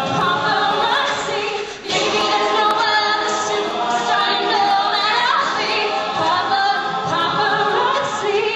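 A cappella vocal ensemble singing, voices only with no instruments, with a short break in the singing just under two seconds in.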